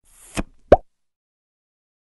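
Two short electronic blips closing a channel logo sting, the second one louder.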